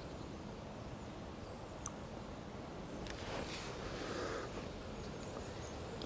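Faint outdoor ambience of wind through long grass, with a single faint click about two seconds in and a soft rustle a little past the middle.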